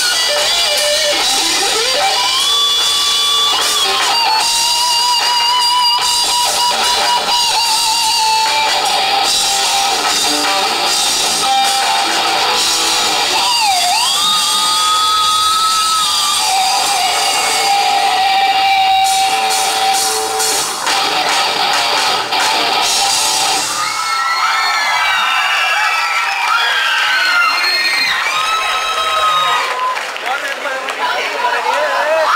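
Live rock band with loud electric guitars playing long, bending lead notes with vibrato over drums and bass. About 24 seconds in, the band stops and the crowd cheers and shouts.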